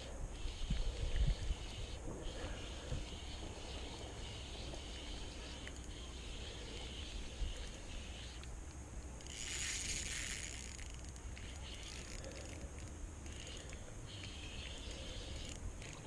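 Faint sound of a spinning reel being cranked as a hooked rainbow trout is reeled in, over a steady low rumble. A hiss of about two seconds comes midway.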